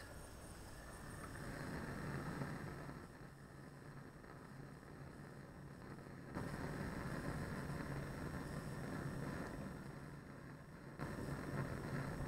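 Bunsen burner gas flame burning with its air hole opened, a steady rushing noise that drops for a few seconds and steps louder again about six seconds in.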